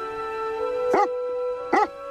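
A dog barks twice, two short barks under a second apart, over sustained background music.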